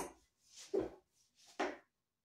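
Wooden cane striking the wooden trunk of a wing chun dummy: a sharp knock right at the start, then two more strikes spaced under a second apart.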